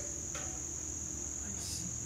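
A steady high-pitched whine with a low hum beneath it.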